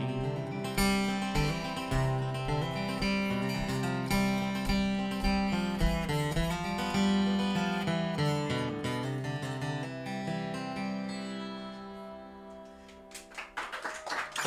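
Solo steel-string acoustic guitar playing a song's instrumental ending, a mix of strummed chords and picked notes that grows quieter and dies away about a second before the end.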